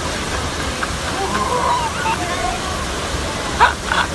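Steady rush of a waterfall pouring into a pool, with faint voices over it and a brief louder voice near the end.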